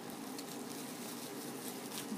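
Faint, steady crackling of plastic bubble-wrap packaging being handled.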